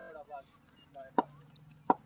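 Two sharp knocks, about two-thirds of a second apart, with faint distant voices between them.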